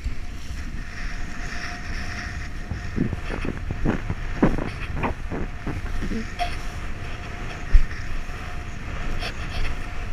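Wind buffeting an action camera's microphone while kiteboarding, over the rush and splash of chop against the board, with a run of splashes in the middle and one heavy low thump near the end.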